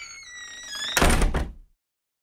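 An end-card transition sound effect: high ringing chime-like tones that slide slightly downward, then a loud thud about a second in that stops abruptly.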